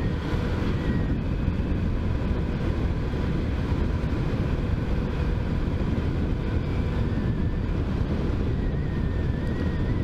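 Wind rushing over the microphone of a motorcycle under way, with the bike's engine running at a steady cruise underneath; the sound is even, with no change in speed.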